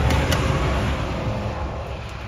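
A door latch clicks once about a third of a second in, over a low rumble that fades out.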